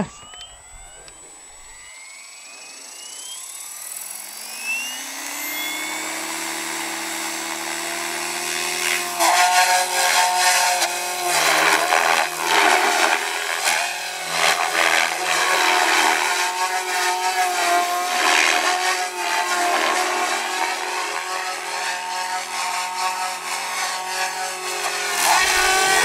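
Goblin 570 electric RC helicopter with a Scorpion brushless motor spooling up: a whine rising in pitch for several seconds, levelling off as the rotor reaches head speed. From about nine seconds in, the motor and rotor blades are heard in flight, louder and swelling and dipping as it is thrown around.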